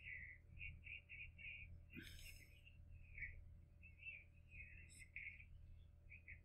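Near silence: room tone with faint, tinny snatches of voice, the anime's dialogue leaking from earbuds.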